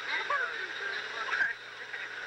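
Indistinct voices over a steady hiss and hum from old home-video tape.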